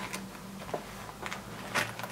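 Faint rustles and light taps of paper inserts and a laminated dashboard being handled in a leather traveler's notebook, over a steady low hum.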